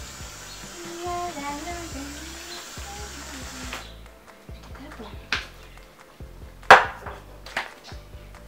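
Aerosol can of shaving foam spraying with a steady hiss that stops abruptly about four seconds in, followed by a few sharp knocks, the loudest about seven seconds in.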